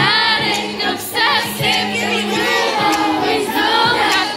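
Several women singing in harmony through a concert PA, over amplified backing music with a held bass note.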